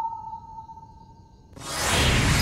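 A held, pure electronic note from the background score fades away, then about three-quarters of the way through a rushing whoosh sound effect swells in quickly and grows loud.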